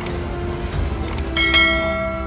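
A single bright bell chime about a second and a half in, the notification-bell ding of a subscribe-button animation, over background music.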